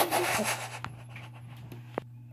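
Rubbing and handling noise, loudest in the first half second and then fading to a low rustle with a few faint clicks, under a steady low hum. It comes from the handheld camera being moved about.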